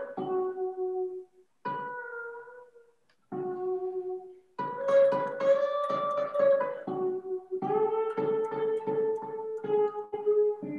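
Eight-string fretless guitar playing single sustained notes with short pauses, some notes sliding down or up in pitch. The notes are pushed off standard tuning, which the fretless neck allows.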